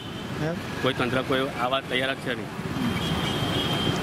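Road traffic going by: motor vehicles passing, a steady noisy background that is heard on its own for the last second and a half after a man's voice stops.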